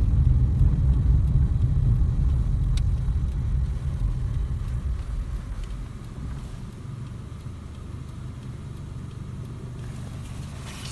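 Low rumble of engine and road noise inside a Toyota car's cabin while driving. It dies down between about four and six seconds in as the car slows, leaving a quieter steady hum.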